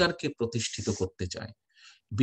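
A man speaking in Bengali, delivering a speech, then breaking off into a short pause near the end.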